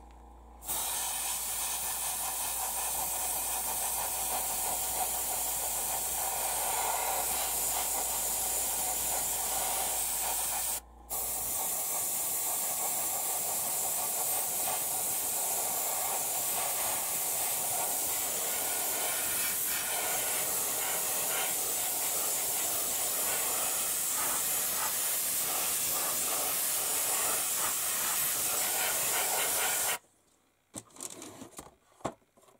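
Airbrush spraying thinned paint with a steady hiss of compressed air. It starts about a second in and stops for a moment about eleven seconds in as the trigger is let off, then carries on.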